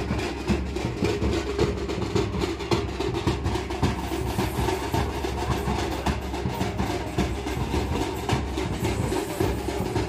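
Dhol and tasha drums played together in a fast, steady rhythm, a dense run of beats that carries on without a break.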